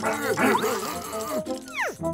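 Cartoon background music with a dog character's short yapping barks, then a quick falling pitch glide near the end.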